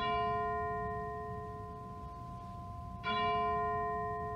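A bell struck twice, about three seconds apart, each stroke ringing on with a clear multi-tone hum that slowly fades. It is rung at the consecration, as the bread is bowed over and lifted up after "this is my body".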